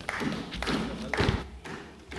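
Knocking on desks and light clapping in a parliament chamber as applause at the end of a speech, with several heavy thuds, the loudest a little past a second in.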